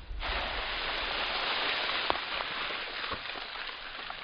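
Soil and small stones thrown up by a buried firecracker's blast raining back down: a steady pattering hiss with a few sharper ticks of pebbles landing, thinning out near the end.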